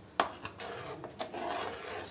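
Steel ladle stirring a thick sauce in a steel kadai: a sharp clink against the pan a fraction of a second in, then a few lighter knocks over a scraping sound.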